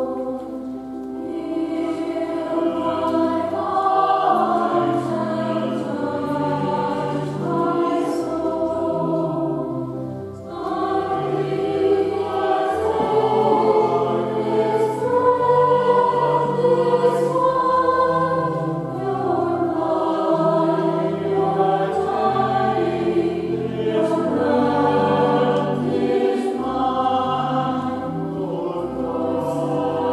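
Mixed church choir singing in parts with sustained notes over a low accompanying line, with a brief break between phrases about ten seconds in.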